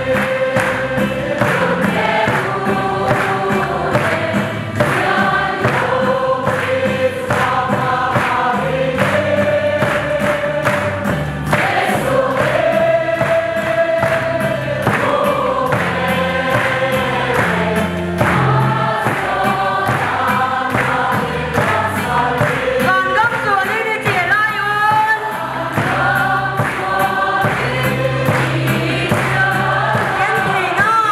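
A large congregation of men and women singing a gospel hymn together, with hand-clapping on a steady beat.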